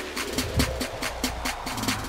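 Background music with a steady beat, about four beats a second.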